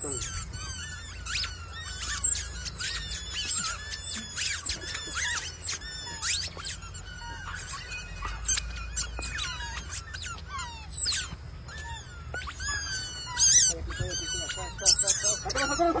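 Squeaky rubber chicken toys being stepped on: many short, high squeaks, one after another.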